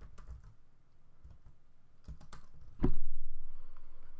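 Computer keyboard typing: a few scattered keystrokes, then one much louder thump about three seconds in.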